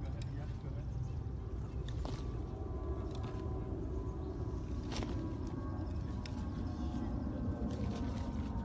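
Tennis ball struck with a racket several times, sharp pops with the clearest about two and five seconds in, over a steady low rumble.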